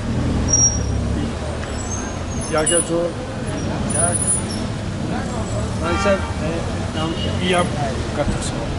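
Street traffic noise with a vehicle engine idling close by; its low hum fades about a second in. Scattered low voices of people standing nearby are mixed in.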